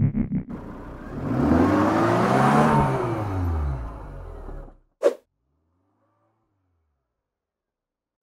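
Sound-effect car engine revving up and falling back down in pitch, with a rushing hiss over it, cutting off just before the middle; one brief sharp whoosh follows about five seconds in.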